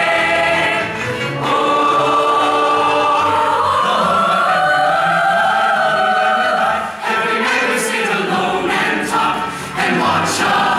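A full stage chorus of men's and women's voices singing together, holding long notes through the middle with a brief drop in level about seven seconds in.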